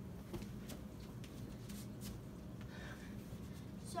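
Soft footsteps on carpet and clothing rustle, with a few faint ticks, over a low steady background hum.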